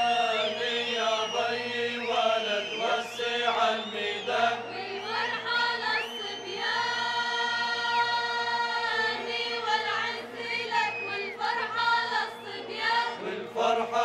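A folk troupe's chorus, men's and women's voices, singing a traditional Jordanian song in Arabic over a steady sustained drone.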